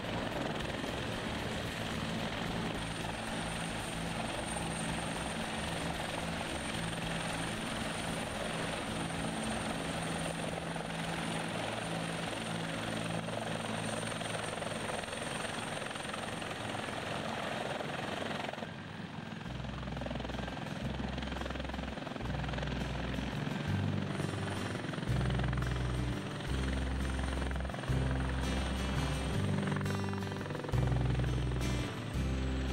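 Griffin HT1 (Bell 412) twin-turbine helicopter in a close hover, its rotor and turbines making a steady, dense noise. About two-thirds of the way through, the sound cuts abruptly to music with a slow, deep bass line.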